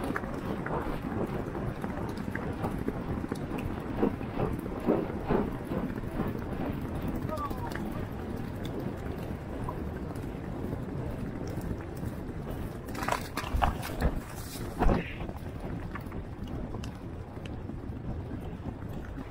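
Racehorse galloping on turf, its hoofbeats under steady wind noise on the jockey's camera microphone. A cluster of louder knocks and bursts comes about three-quarters of the way through.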